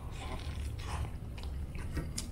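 A person biting into a giant burrito and chewing it, faint, with scattered small clicks.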